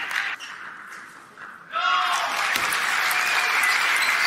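Arena crowd applauding and cheering a won point. The clapping dies away at first, then swells sharply about two seconds in with a shout and holds steady.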